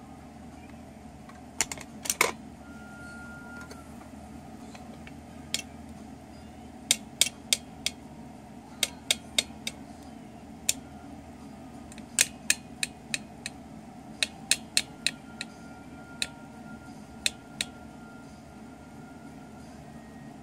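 Irregular sharp tapping clicks on a plastic toy drill, about two dozen spread unevenly, some in quick runs, over a steady low hum.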